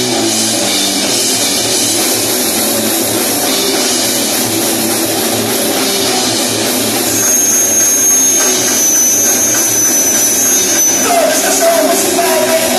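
Live rock band playing an instrumental passage: electric guitar, bass guitar and a Tama drum kit, the whole getting a little louder about seven seconds in.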